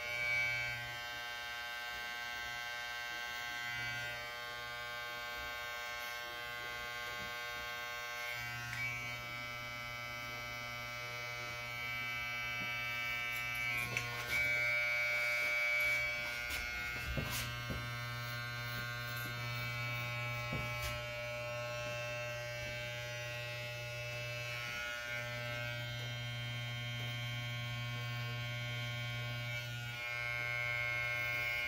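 Corded electric hair clippers running with a steady buzz as they cut a client's hair. A few short clicks and handling knocks come about halfway through.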